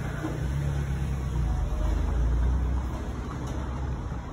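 Steady low background rumble, swelling a little around the middle.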